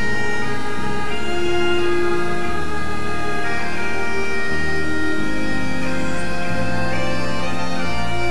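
Bagpipe music as a soundtrack: a steady drone under a melody of held notes that change every second or two.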